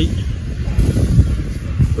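Wind buffeting the microphone: an irregular low rumble with no steady tone.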